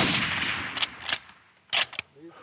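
A single sniper-rifle shot: a sharp crack right at the start whose echo dies away over about three quarters of a second. It is followed by three sharp clicks, the middle one with a brief high metallic ring.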